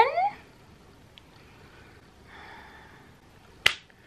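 A woman's voice rising sharply in pitch in a brief excited exclamation at the very start, then a quiet room with a faint soft rustle, and a single sharp click a little before the end.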